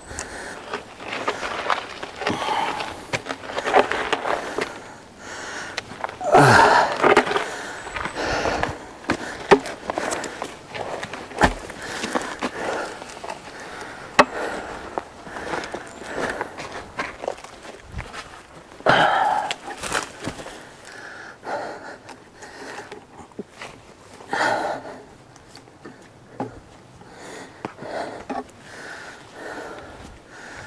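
A man breathing hard with effort while rolling and dragging heavy logs by hand with a pulp hook, with footsteps and short knocks and scrapes of the logs on the ground. The loudest bursts come about 6 and 19 seconds in.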